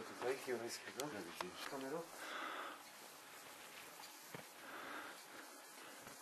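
People speaking briefly in the first two seconds, then a quiet stretch with two short soft rushes of noise and a single click.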